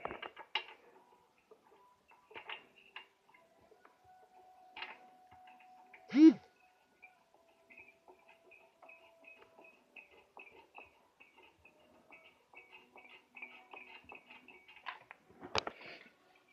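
Faint, scattered light clicks and taps of small metal parts and a tool being handled at a Vespa scooter's cylinder head, with a man's brief "hmm" about six seconds in.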